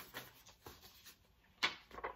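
Quiet handling of paper flashcards being sorted, with one sharp paper snap about one and a half seconds in as a card is lifted out.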